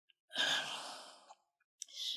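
A woman's audible breath into a lecture microphone, a single breathy rush lasting about a second, taken mid-sentence. A short click follows just before the end.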